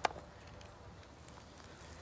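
A single sharp tap at the start, then faint rustling and scuffing as a person gets up from kneeling on loose garden soil and wood-chip mulch.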